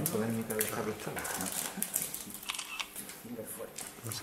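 Voices of several people talking in the background, with scattered small clicks and taps.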